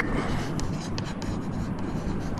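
Chalk scratching and tapping on a chalkboard as words are written, a quick run of short strokes.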